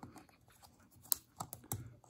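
A few faint, sharp clicks and light scrapes of a piston ring and thin plastic guide strips being worked onto a motorcycle piston by hand, the loudest click a little past a second in.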